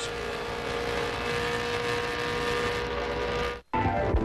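Onboard sound of an IROC race car's V8 engine held at steady high revs at racing speed, heard from inside the car. It cuts off abruptly about three and a half seconds in, and commercial music and a voice start just after.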